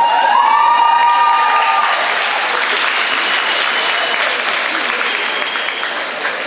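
Audience applauding in a large indoor hall, slowly fading towards the end. A few held high cries ring over the clapping in the first two seconds.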